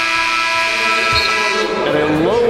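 Arena game-clock horn sounding the end of the first quarter of a basketball game: one long, loud, steady buzz that cuts off about a second and a half in.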